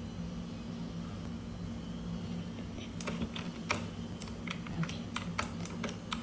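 Irregular clicking on a computer keyboard, about a dozen quick taps starting about halfway through, over a low steady hum.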